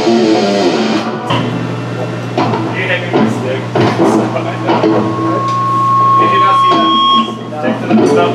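Distorted electric guitars through amps: a held chord rings out and is cut off about a second in, then scattered picked notes over a steady low amp hum, with a thin steady high tone held for a couple of seconds in the second half.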